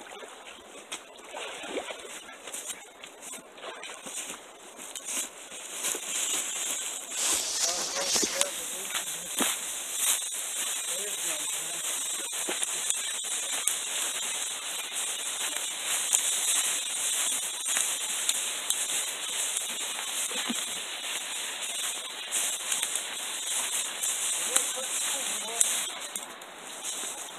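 Dry leaves and pine straw rustling steadily as a heavy animal carcass is dragged over the forest floor, louder after the first several seconds.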